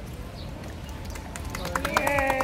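A small group of people clapping, the claps starting about a second and a half in and coming quickly, with voices cheering near the end.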